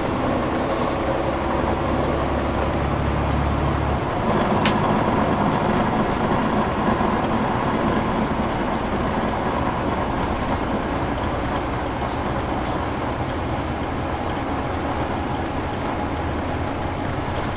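Cummins ISL9 diesel engine of a transit bus running under way, with road and tyre noise, heard from inside the passenger cabin. About four seconds in the low steady engine hum drops away and the sound turns rougher and a little louder, with a sharp click just after.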